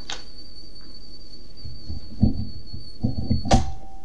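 A few dull thumps and knocks in a small room, then a sharp click near the end, over a steady high-pitched whine in the recording.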